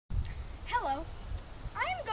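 A boy's voice saying a few words, each with a pitch that swoops up and down, over a steady low wind rumble on the microphone.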